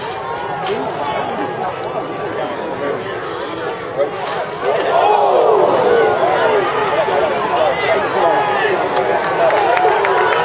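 Grandstand crowd at a track meet, many voices talking and shouting at once, growing louder about five seconds in as the hurdlers come past.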